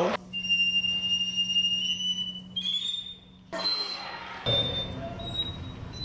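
Orchestra bells (glockenspiel) playing very high ringing notes, the pitch stepping upward, a short pause, then a still higher note. From about four and a half seconds in, a violin plays a very high sustained note as its try at the highest pitch.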